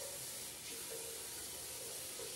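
Water from a bathroom tap running steadily into the sink.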